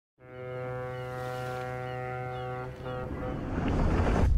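A ship's foghorn sounding one long, deep, steady note that stops after about two and a half seconds, followed by a rising swell of noise.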